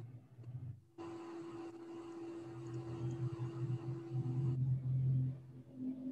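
Faint steady hum with a low, wavering rumble joining it midway: background noise from an open microphone on a video call.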